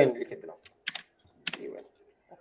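Keystrokes on a computer keyboard: two sharp clicks about half a second apart, with a faint rattle after the second.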